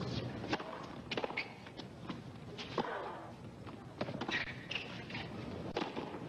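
A tennis rally on a hard court: a serve, then sharp racket-on-ball strikes about every second or so, with short shoe squeaks between shots.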